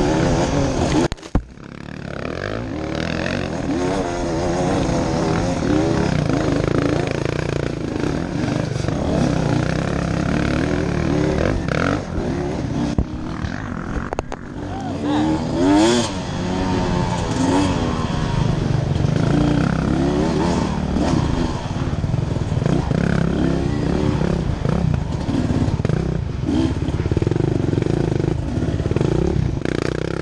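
Dirt bike engine heard close up, revving up and down as the rider works the throttle and gears along a rough trail. It drops away briefly about a second in, then builds back.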